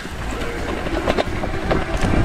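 ENGWE X20 e-bike riding over a bumpy dirt trail, with an irregular clatter and rattle from its front suspension fork over a low rumble from the tyres and ride. The clattering is a noise fault in the front fork.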